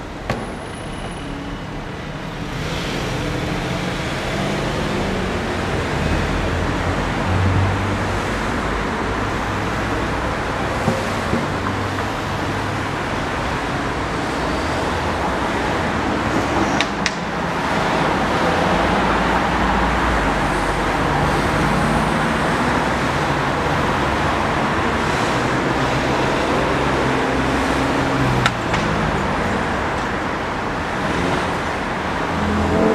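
City street traffic: cars and other vehicles passing with engines running and tyre noise. It grows louder a couple of seconds in and again about two-thirds of the way through.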